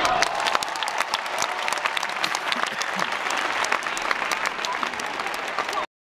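Audience applauding, a dense steady patter of many hands clapping that cuts off abruptly near the end.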